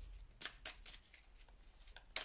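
Faint shuffling of a tarot deck in the hands: a handful of short, crisp card flicks spread across two seconds.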